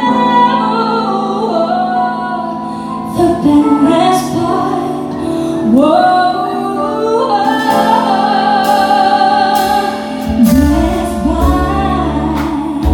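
Live R&B ballad: a woman sings sliding vocal runs over a band of keyboards, electric guitar, bass guitar and drums. Cymbal hits come in briefly about three seconds in and then keep going from about halfway, and the bass and drums grow heavier near the end.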